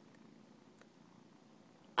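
Kitten purring, a faint steady low rumble.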